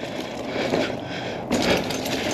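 Mountain bike rolling downhill on a dirt trail: the knobby front tyre running over packed dirt and dry leaves, with the bike rattling. The noise gets louder about one and a half seconds in.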